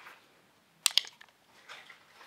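Quiet room with a few sharp crackling clicks about a second in and a fainter one near the end, from a small piece of paper being handled in the hand.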